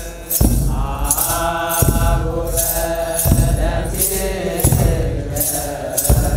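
Eritrean Orthodox clergy chanting together, with hand-held sistra (tsenatsil) shaken in a steady beat over the singing. A few low thuds fall in with the rhythm.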